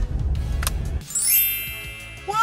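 Low rumble of a car cabin on the move. About halfway in it cuts to a rising, shimmering sweep sound effect of the kind used as an editing transition, whose pitch climbs steadily.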